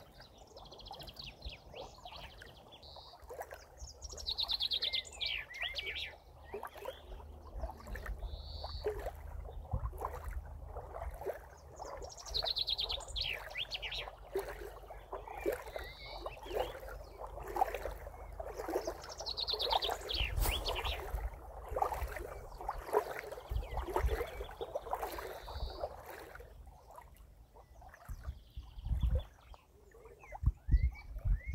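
Small birds chirping and trilling in short bursts every few seconds, some calls falling in pitch, over a low rumble and faint rustling.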